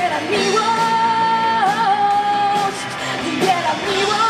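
A woman singing with a live pop-rock band, electric guitar and drums behind her; she holds one long note for about two seconds, with a small dip in pitch partway through.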